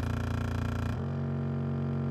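Subwoofer speaker playing a steady low test tone that steps abruptly to a higher tone about a second in.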